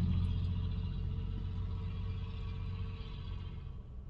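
Low, steady rumble of a car heard from inside its cabin, with an engine hum underneath, gradually getting quieter.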